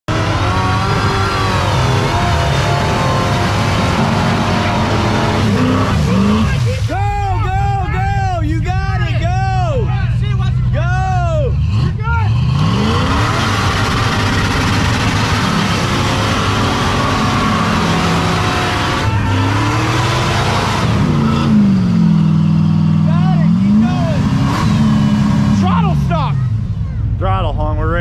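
V8 engine of a Jeep Wrangler run at high revs with its tyres spinning and flinging mud in deep mud. For about five seconds it repeatedly bounces off the rev limiter, the pitch rising and cutting back about twice a second. Later the revs drop and climb again.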